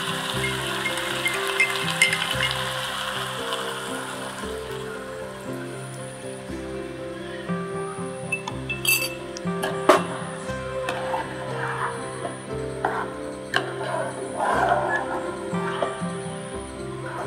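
Chicken curry sizzling in a frying pan, the sizzle fading over the first few seconds as coconut milk goes in, under steady background music. A single sharp clink comes about ten seconds in.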